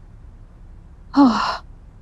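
A woman's weary sigh, a breathy exhale about half a second long that falls in pitch, a little over a second in.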